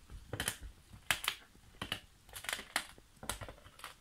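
Large dog crunching into a frozen raw chicken carcass: a run of sharp, uneven cracks of teeth on frozen bone and meat, about two a second.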